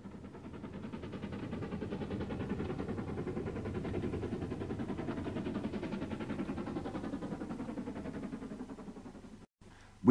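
Steam locomotive exhaust beats from a train working up a steep bank, a rapid even chuffing that swells and then fades away. It cuts off suddenly near the end.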